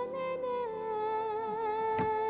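A voice humming a slow tune in long held notes, stepping down a little in pitch about two-thirds of a second in.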